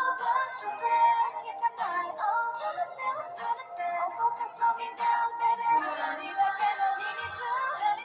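A K-pop song sung by female vocalists over a pop backing track, played back from a live concert video; the bass is thin, with the melodic vocal line running steadily throughout.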